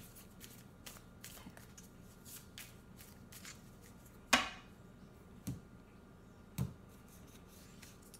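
A tarot deck being shuffled by hand: a run of soft card flicks and slaps, with two louder knocks in the second half.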